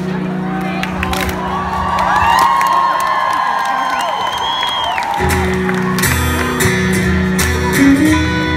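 Rock concert crowd screaming and whooping over sustained electric guitar and bass notes ringing from the stage amplifiers between songs. The low notes drop back, then come in again louder about five seconds in.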